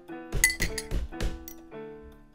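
Electronic keyboard playing music: held notes over a series of sharp, clinking percussive hits in the first part.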